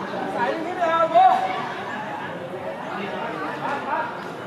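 Several people's voices talking and calling out over one another, with one louder voice about a second in.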